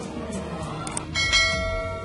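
A bell-like chime strikes about a second in and rings on, fading slowly, over background music.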